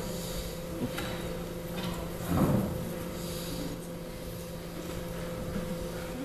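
A metal-framed chair scraping briefly on the stage floor about two seconds in, as it is pulled out and sat on. A few light knocks come before it, over a steady low hum.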